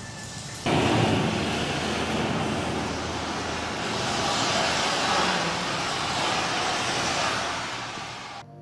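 A loud, steady rushing noise with no pitch. It cuts in abruptly under a second in and eases off near the end.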